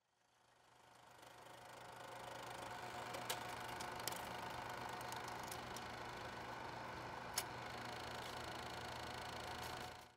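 Faint old-film projector sound effect: a steady mechanical whir with low hum and hiss, fading in over the first two seconds, with a few sharp crackles.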